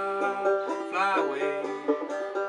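John Peterson fretless banjo, walnut with a calfskin head and steel strings, tuned gDGBD and played clawhammer style, picking out the melody between sung lines. About halfway through, a low note slides down in pitch on the fretless neck.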